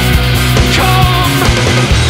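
Loud emo/post-hardcore rock music: a full band with drums hitting on a steady beat and dense guitars.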